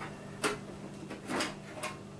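Lens cover of a fluorescent ceiling fixture being pulled sideways along its housing: three short clicks and scrapes, over a steady low hum.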